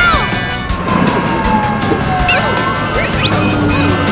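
Cartoon sound effects: a run of crashes and knocks with a long falling tone, over background music.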